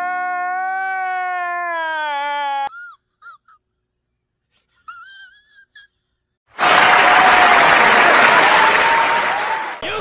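A man's long, held wail that drops in pitch and cuts off about two and a half seconds in. A few brief vocal sounds follow. About six and a half seconds in comes a loud burst of crowd cheering and screaming that lasts around three seconds.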